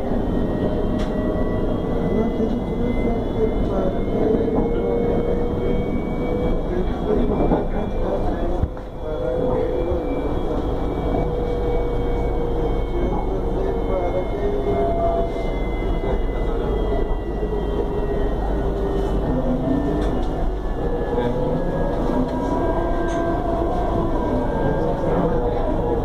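CSR-built electric multiple unit running at speed, heard from inside the car: a steady rumble of wheels on the rails with the whine of the electric traction equipment, which drifts slowly up and down in pitch, under passenger chatter.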